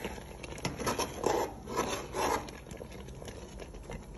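Metal spoon scraping against a cooking pot as thick soup is stirred: several rasping strokes in the first half, quieter near the end.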